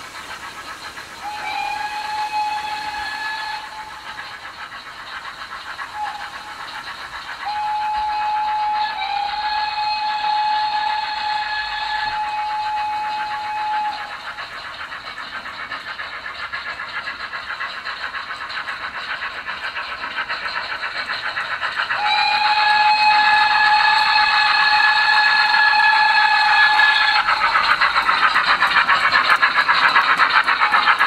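Sound-fitted (DCC) O gauge model steam locomotives: several steam-whistle blasts, two of them long, over steady chuffing and running noise on the track. The chuffing comes through as a quick, even beat and grows louder near the end.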